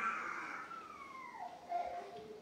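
A woman's voice singing a long, high drawn-out note into a microphone. The note slides steadily down in pitch and holds briefly near the end.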